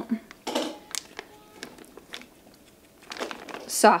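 Plastic bag crinkling in short, quiet bursts as softened butter is squeezed and scraped out of it into a glass bowl.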